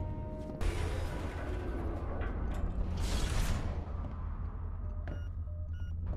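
Film soundtrack of science-fiction ambience: a deep low rumble under a quiet music score, with a sudden swell about half a second in and a whoosh around three seconds. Two short electronic bleeps come near the end.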